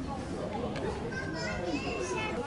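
Visitors talking among themselves, with children's high voices chattering through it.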